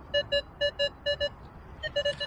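Minelab Multi-IQ metal detector giving a target response: short, mid-pitched beeps in pairs as the coil sweeps back and forth, three pairs in quick succession, a pause, then more beeps near the end. It is a low-conductive signal reading about 17, which the detectorist suspects is foil.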